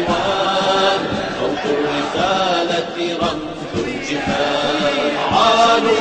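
A male chorus singing an Arabic protest song in a chant-like style, in long held notes.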